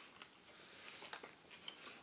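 A person faintly chewing a bite of a fried fish sandwich, with a few soft, short clicks scattered through.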